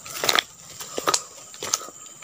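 Footsteps crunching through dry leaf litter and low vegetation, with rustling as palm fronds brush past: three or four separate crackling steps.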